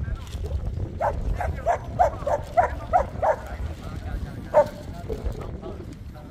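A Jindo dog barking: a quick run of about eight sharp barks, roughly three a second, then a single bark a second later, over a low rumble of wind on the microphone.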